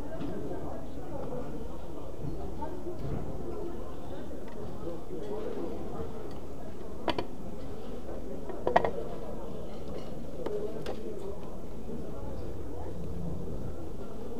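Indistinct crowd chatter throughout, with two sharp clicks of hard plastic being handled about halfway through, the second one louder, from a DJ Hero turntable controller being turned over in the hands.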